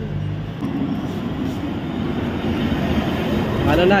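Steady rumble of street traffic with passing vehicles, rising a little in level toward the end.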